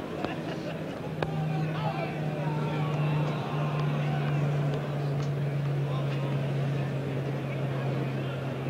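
Murmur of a cricket ground crowd with distant voices, over a steady low hum in the old broadcast recording, and a single sharp knock about a second in.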